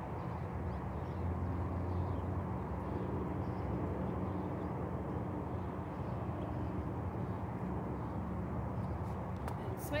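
Indistinct, low talk over a steady low rumble of outdoor background noise.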